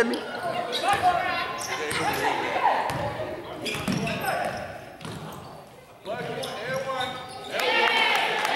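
A basketball bouncing on a hardwood gym floor, a few sharp knocks, among players' voices ringing in a large gym hall.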